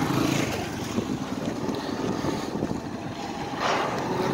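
Small motorcycle engines running at low speed. A louder swell near the end as a motorcycle comes up close.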